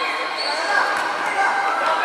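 Children's voices shouting and calling in an echoing indoor sports hall, with a futsal ball bouncing on the wooden court.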